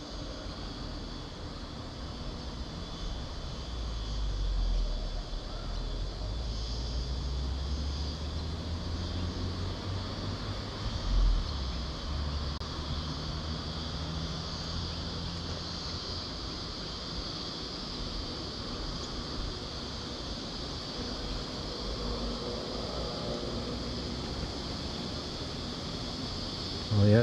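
Steady high-pitched insect chirring over a low, distant engine rumble that swells from about four seconds in and slowly eases off later. There is one brief low thump about eleven seconds in.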